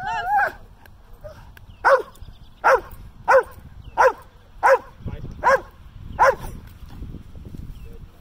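Dutch Shepherd barking in protection work: seven sharp barks, roughly one every two-thirds of a second, ending a little past six seconds in.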